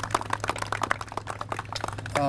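Applause from a small group: many scattered hand claps running together, with no cheering.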